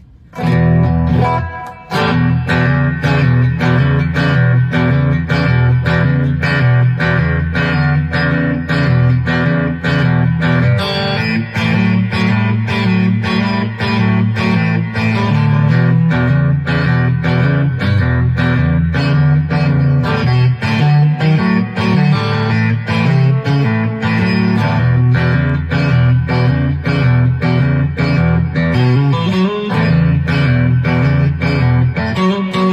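Fender Stratocaster electric guitar playing a blues shuffle: a steady, driving low-string riff with chords and fills on top. There is a short break near two seconds in.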